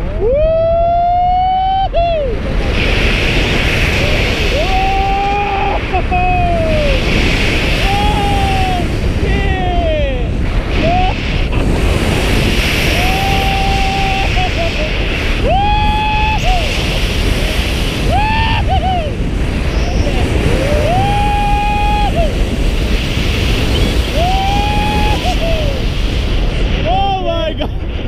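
Heavy wind rush over the microphone of a tandem paraglider flying steeply banked turns, constant throughout, with a person screaming about ten times in long, rising-and-falling cries of a second or so each.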